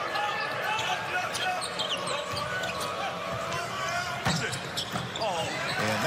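Basketball game sound on a hardwood court: the ball being dribbled and sneakers squeaking over a steady arena crowd noise, with a sharp thud about four seconds in.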